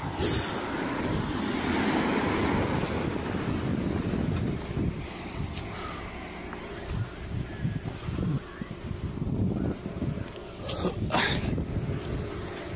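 Rumbling outdoor noise on a phone microphone, a car running close by and wind on the mic, with handling noise and a short rustle about eleven seconds in.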